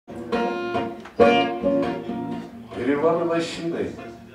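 Steel-string acoustic guitar strumming ringing chords as the opening of a song.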